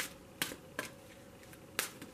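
Four sharp clicks of a large oracle card deck being handled and split for shuffling, with a longer pause before the last click.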